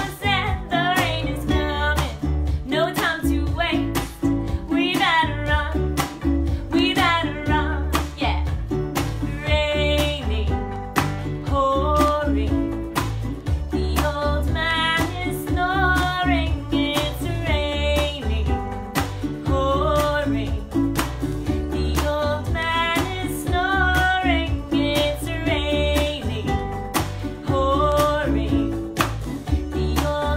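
A song: singing over guitar, bass and a steady beat.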